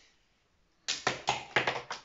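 A flipped marker clattering as it lands: a rapid run of six or seven sharp knocks starting about a second in, as it bounces off furniture and drops behind the desk.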